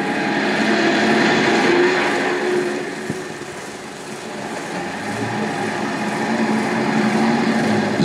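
Road traffic: motor vehicle engines running as vehicles pass, with a steady low hum. It grows louder over the first two seconds, fades around the middle, and builds again toward the end.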